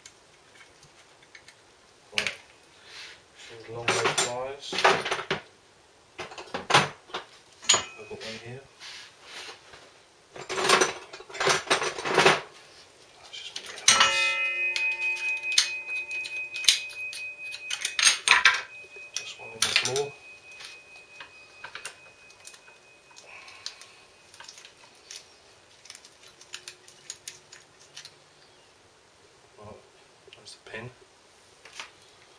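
Metal clicks, scrapes and clinks of hand tools and brake parts as a motorcycle's front brake caliper is taken apart and its pads removed. About halfway through, a piece of metal is struck and rings for several seconds.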